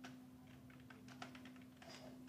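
Faint, irregular clicking of computer keyboard keys being typed, over a steady low electrical hum.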